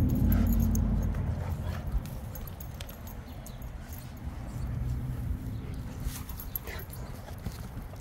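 Wind buffeting the microphone, heavy at first and dying down after about a second, with one soft thud about two seconds in. Near the end there is a faint short whine from a Rottweiler.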